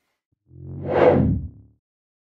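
A transition whoosh sound effect with a low pitched tone underneath, swelling up and dying away in just over a second.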